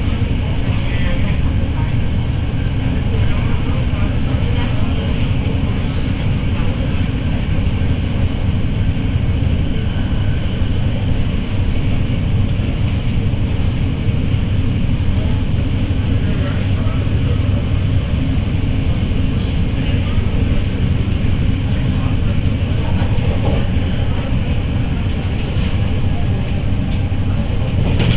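Interior running noise of a moving MTR train: a steady low rumble of the wheels and running gear on the track, with a constant hiss above it.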